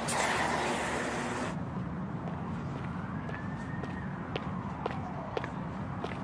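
City street background with a steady low traffic rumble. A loud hiss of passing traffic stops abruptly about a second and a half in, then light footsteps come at about two a second, with a faint tone rising and falling behind them.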